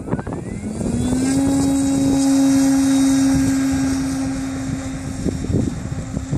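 Electric motor and propeller of a 6-metre-span ASW 17 RC glider spinning up for takeoff: a steady drone that rises in pitch over the first second, holds, then fades as the glider moves away down the runway.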